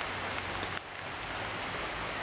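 Light rain falling: a steady hiss with a few sharp drop ticks, the loudest just under a second in.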